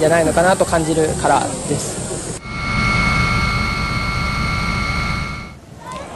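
After a brief voice, a steady mechanical roar with a fixed high-pitched whine starts suddenly and runs for about three seconds before fading out.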